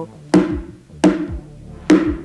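A pot struck three times with a spoon, each sharp knock followed by a short metallic ring.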